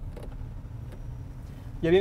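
Low, steady cabin rumble of a Chery Tiggo 8 Pro on the move: road and drivetrain noise heard from inside, with a man's voice starting near the end.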